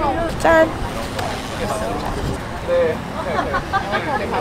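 Indistinct voices of people chatting nearby, heard in snatches over a steady low rumble of wind on the microphone.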